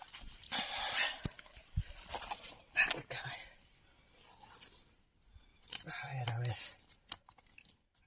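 Rustling and light knocks of a nylon gill net being worked by hand off a large tilapia, broken by brief breathy muttering and a short spoken sound about six seconds in.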